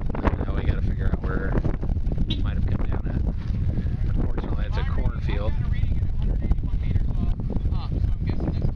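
Wind buffeting the microphone as a steady low rumble, with people talking in the background.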